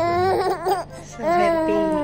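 A baby vocalizing in two long, drawn-out calls, each nearly a second long, with a short pause between.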